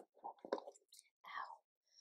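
A woman's quiet whispered muttering: a few soft, breathy half-words.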